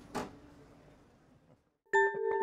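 Faint outdoor street ambience with one short sound near the start, fading out to silence about a second in. Just before the end, station ident music starts suddenly with a sustained chord over a pulsing beat.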